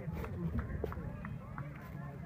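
Baseball crowd chatter: many spectators talking and calling out at once in the stands, with a few sharp clicks mixed in.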